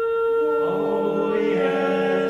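Singers and chamber orchestra holding the closing chord of a show tune: one high note held steadily, with lower voices and instruments swelling in beneath it about half a second in.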